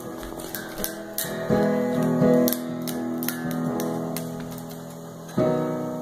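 Amplified electric guitar strummed loosely by a child, chords ringing out with long sustain between small pick and string clicks; the loudest strums come about a second and a half in and near the end.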